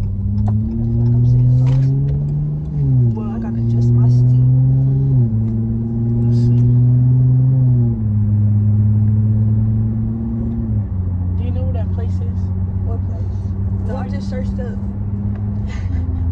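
Car engine heard from inside the cabin while accelerating. The automatic transmission shifts up four times: the engine's pitch climbs, then drops at each shift, about every two and a half seconds. After the last shift the engine settles into a steady cruise.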